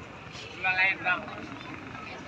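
Two short, high-pitched shouts from a voice, wavering in pitch, about half a second and a second in, over a steady background of outdoor noise.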